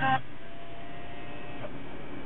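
Motorised fold-out screen of a Pioneer AVIC-P4100DVD head unit closing after a DVD is loaded: a faint, steady small-motor whir for about a second and a half that ends in a light click, over a steady hiss.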